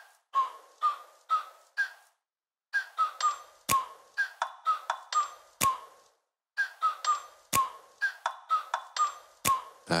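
Electronic interface beeps from an intro animation's sound design: short pings, two to three a second, in runs that step up in pitch, with a sharp click about every two seconds and brief pauses between runs.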